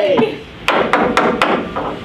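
A short burst of hand clapping, about five quick claps in under a second, from people cheering, just after a shouted "yay".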